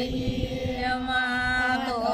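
Group of women chanting a Gor Banjara devotional song to Sitala Mata, holding one long note that dips in pitch near the end.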